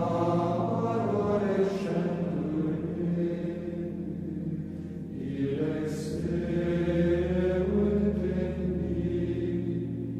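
Choir singing slow chant in two long, swelling phrases, over a steady low sustained tone.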